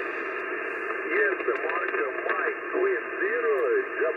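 Single-sideband receive audio from an Icom IC-740 HF transceiver on the 15 m band: steady band hiss, cut off sharply above about 3 kHz. A distant station's voice comes through faintly from about a second in.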